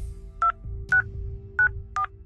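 Touch-tone keypad of a desk telephone being dialed: four short two-note DTMF beeps, one per key press, about half a second apart.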